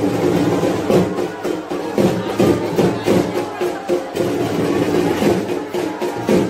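Dhak drums beating a fast, steady rhythm, mixed with the voices of a large crowd.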